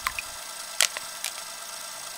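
Sound-effect clicks and crackles over a steady hiss: a few sharp clicks near the start, just under a second in and again a little later.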